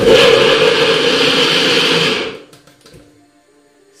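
Personal bullet-style blender motor running at full speed, blending chopped carrots and water into carrot juice; it starts suddenly and cuts off a little over two seconds in.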